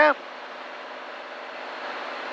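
Cabin noise of a Cirrus SR20 in cruise-power flight: the engine and propeller running steadily with air noise around the cabin, slowly getting a little louder.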